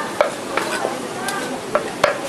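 Cleaver chopping green chili peppers on a chopping block. There is a sharp chop just after the start and another near the end, with the blade scraping and pushing the cut pieces around in between.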